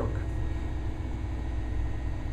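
A steady low hum with a faint hiss over it, without any distinct events.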